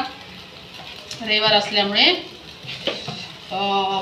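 A woman's voice in two short stretches, one in the middle and one near the end, over a faint steady hiss.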